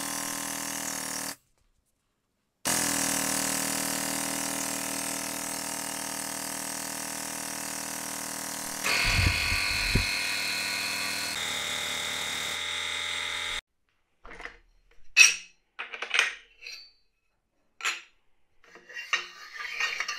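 Pittsburgh 8-ton air-over-hydraulic long ram's air-driven pump running steadily as it pushes the tube bender through a bend toward 90 degrees. The sound cuts off abruptly several times, with a brief low rumble about halfway through. Near the end come a few sharp metallic clanks and knocks.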